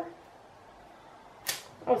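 A quiet pause with one short, sharp tick about one and a half seconds in.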